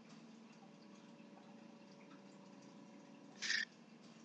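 Very quiet room tone with a faint steady hum, and a short breath noise from the man at the microphone about three and a half seconds in.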